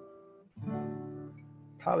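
Steel-string acoustic guitar strummed once with a pick about half a second in; the chord rings on and slowly fades. Before it, the last of a previous chord dies away.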